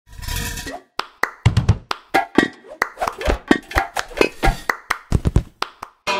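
Cup-song rhythm: a quick run of hand claps and a cup knocked and set down on a tabletop, many sharp hits in an uneven pattern, after a short noisy burst at the very start.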